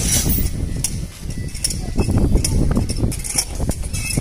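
Hand-worked sluice mechanism of a canal lock gate being operated, giving a few sharp metallic clicks over a steady low rumble, as the opening that fed water into the lock chamber is closed.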